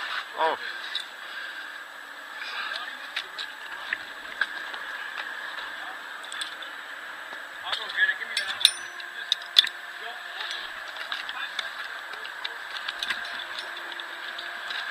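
Footsteps crunching through snow-covered branches and brush, with sharp clicks and clinks of climbing gear, clustered about two-thirds of the way in, over a steady background hiss.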